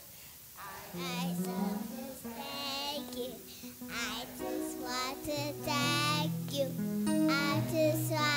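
A church family group of adults and children singing a chorus together, with wavering voices. After a brief pause at the start the singing resumes, and sustained low accompanying notes come in about five seconds in.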